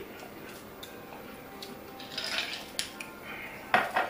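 Scattered clicks and light clatter of hands working through a seafood boil, crab shells and dishes being handled, with the sharpest clack near the end.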